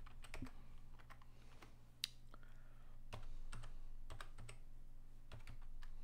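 Typing on a computer keyboard: scattered, irregular key clicks, with a low steady hum underneath.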